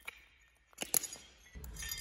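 Shards of broken terracotta and porcelain clinking as a shoe steps on them: a sharp click at the start, then a few more clinks about a second in.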